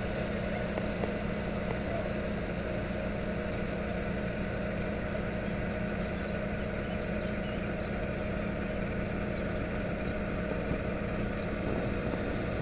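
Diesel locomotive's engine running steadily at low revs, a constant low drone, as the locomotive moves slowly past.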